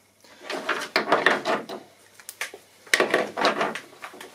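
Handling noise in two bursts of about a second and a half each: rustling and scraping with small clicks as hands work on the rudder cable inside a carbon-fibre kayak's cockpit.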